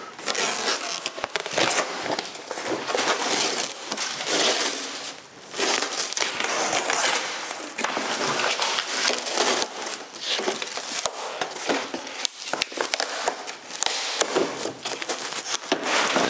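Old aircraft fabric covering being peeled and torn off a wooden biplane wing, pulling free where it was glued with Poly-Fiber adhesive: a continuous rough, crackling tearing with a brief lull about five seconds in.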